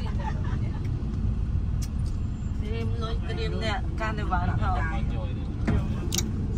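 Steady low rumble of a road vehicle and street traffic, with people's voices talking over it about halfway through.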